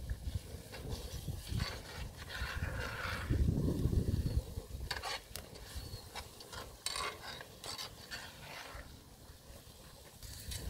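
Metal spatula stirring and scraping a frying pan of curry over a wood fire, with a few sharp clicks of the spatula against the pan in the second half. Wind rumbles on the microphone about three to four seconds in, the loudest part.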